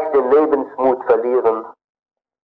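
Speech only: a man lecturing in German, on an old recording. His voice breaks off near the end.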